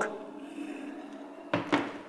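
Boiling water from an electric kettle trickling faintly into a china cup, then the plastic kettle set down on its base with a short clunk about one and a half seconds in.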